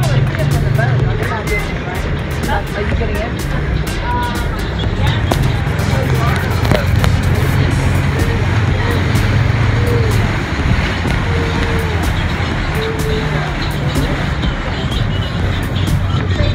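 A tour boat's engine running with a steady low hum, under the rush of wind and water, as the boat travels across open water.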